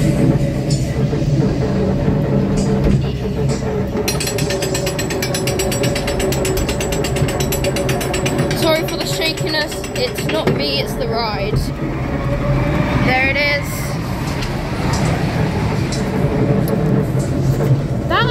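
Snail-car amusement ride's drive mechanism running, with a steady low hum. A fast, even clicking sets in about four seconds in and stops about seven seconds later.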